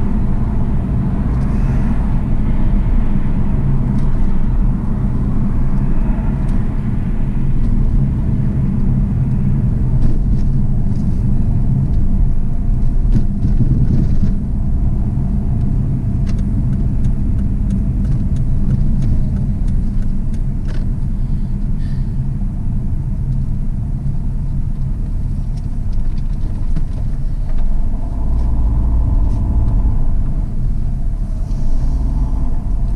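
Road and engine noise heard inside a moving car's cabin, a steady low rumble as it drives off the motorway and along the service-area slip road, with a few faint clicks or knocks partway through.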